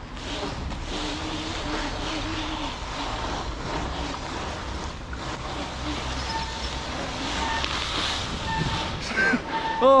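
Wind rushing over an action camera's microphone while an electric mountain bike rolls over a concrete car park deck: a steady rushing noise with a low rumble from the tyres.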